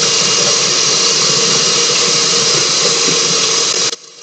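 Kitchen tap running onto plantain leaves in a metal colander while they are rinsed by hand: a loud, steady rushing hiss with a faint high whine through it, cutting off abruptly near the end.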